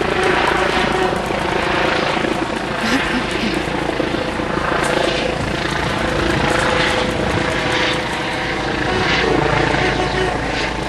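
A helicopter running steadily overhead, a continuous engine and rotor noise, with people's voices mixed in.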